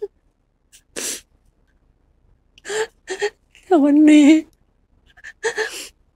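A woman crying as she talks: a sharp sobbing intake of breath about a second in, then short, broken phrases of tearful speech.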